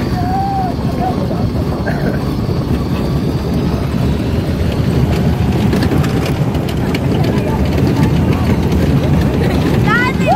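Rushing wind buffeting a phone's microphone on a moving roller coaster, over the rumble of the train on its track, loud and steady, with a few rattles midway.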